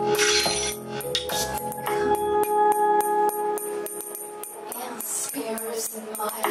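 A small live band playing, with electric guitar and keyboard holding sustained notes while sharp, high percussion hits keep a steady beat. The bass and low drums drop out about two and a half seconds in, leaving the guitar, keyboard and percussion.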